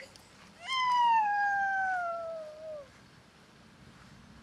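One long, high-pitched wail starting about half a second in, sliding slowly down in pitch over about two seconds before it stops.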